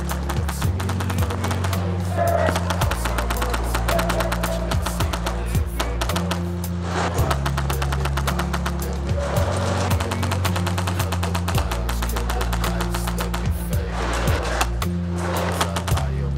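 Music with a held, deep bass line that changes note every few seconds, under dense, fast clicking.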